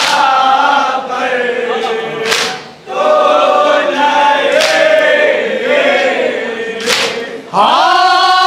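A group of men chanting a nauha, a Shia mourning lament, in unison, holding long melodic lines, with a sharp slap about every two and a half seconds. Near the end a new, louder line begins.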